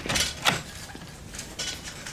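A short mechanical clatter: two loud knocks in the first half second, then a few faint clicks.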